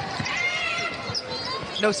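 Arena game sound: a basketball being dribbled on a hardwood court, with short sneaker squeaks over a murmuring crowd.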